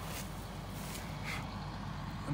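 A vehicle engine idling with a steady low hum, and a couple of faint rustles in the dry canola plants.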